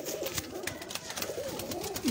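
Domestic pigeons cooing in a loft: repeated low, rounded coos that overlap one another, with a few short clicks among them.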